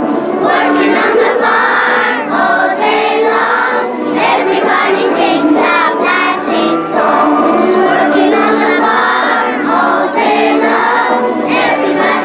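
A group of young girls singing a song together, the voices of a children's choir, with one singer on a handheld microphone.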